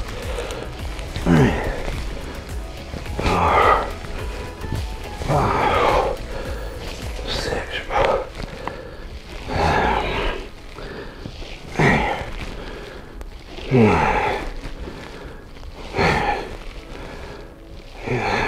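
Background music under a man's short vocal sounds, one about every two seconds, each paced with a rep of his one-arm dumbbell rows.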